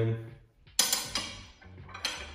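A metal miter bar set down into a table saw's miter slot: one sharp metal clank about a second in that rings briefly and fades.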